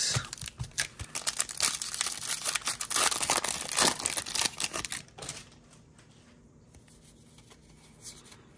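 A foil Yu-Gi-Oh! booster pack wrapper being torn open and crinkled as the stack of cards is pulled out: a dense run of crackling and tearing that stops about five seconds in.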